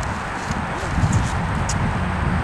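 A young Friesian gelding shifting its feet, hooves stepping on the dirt of a round pen as it moves instead of standing still for mounting.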